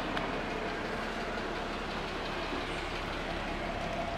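Jeep Wrangler running at idle: a steady, even running noise with no change in pitch.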